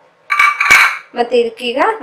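Stainless steel kitchen utensils clinking against a steel pot: a short clatter of sharp knocks with a brief metallic ring, about half a second in.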